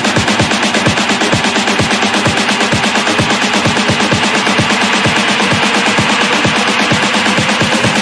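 Electronic dance music played in a DJ set, driven by a fast, steady kick drum under continuous synth sounds.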